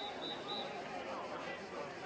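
Background chatter of many people talking at once around a swimming pool, with no single clear voice. Early on there is a quick run of short, high-pitched beeps.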